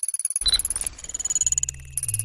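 Synthetic sci-fi computer interface sound effects: a fast stuttering digital pulse with high electronic beeps, a short burst about half a second in, and low tones stepping up and down in the second half.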